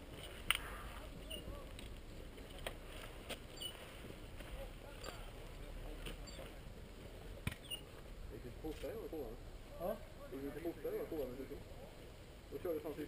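Faint, indistinct voices of people talking some way off, starting about two-thirds of the way in, with scattered small clicks and ticks before that.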